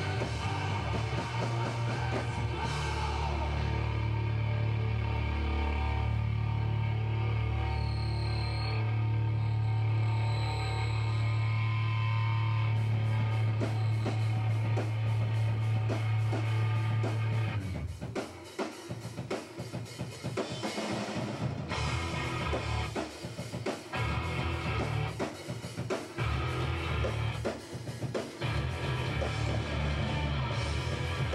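A three-piece noise rock band of distorted electric guitar, bass guitar and drum kit playing live. A heavy sustained wall of sound gives way, a little past halfway, to choppier stop-start riffing with drum and cymbal hits.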